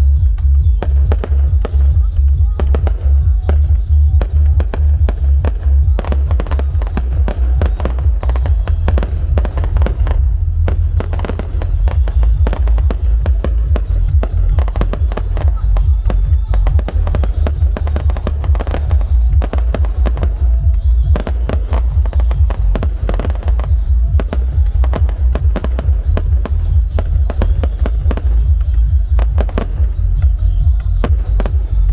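Aerial fireworks display: a rapid, unbroken run of shells launching and bursting, sharp bangs and crackles coming several a second, over a constant heavy low rumble.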